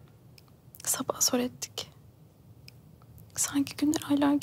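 A woman speaking in a soft, hushed voice close to a whisper, in two short phrases: one about a second in and another near the end.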